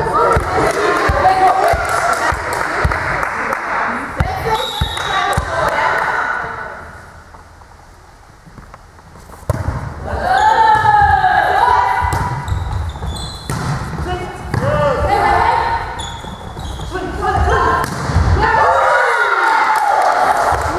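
Volleyball play in a large sports hall: sharp thuds of the ball being struck and bouncing, mixed with players' voices calling out, all echoing in the hall. About a third of the way through it goes briefly quiet, then loud voices start up suddenly and carry on.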